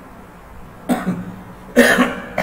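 A man coughing twice, a short cough about a second in and a louder one near the end.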